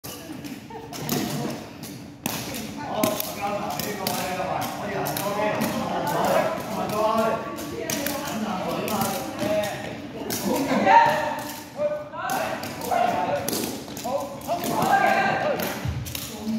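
Repeated sharp thuds and taps of feet kicking a jianzi shuttlecock back and forth, over steady background chatter of voices.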